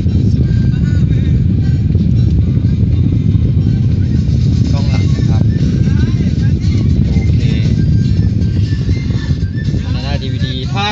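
Music and voices from a DVD playing through the car's audio system, faint over a loud, steady low rumble.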